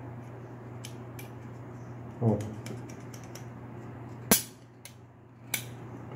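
Light clicks of small parts being handled on a Glock pistol slide, with two sharp clicks about four and five and a half seconds in, the first the loudest. A steady low hum runs underneath, and there is a brief vocal murmur about two seconds in.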